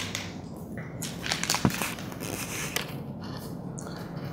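Crackling, rustling handling noise with a few sharp clicks in the middle, over a faint steady low hum.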